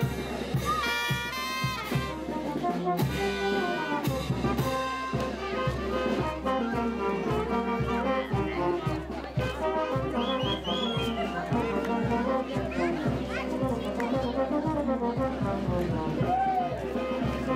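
Brass band dance music with trumpets and trombones over a steady, even beat, with voices in the background.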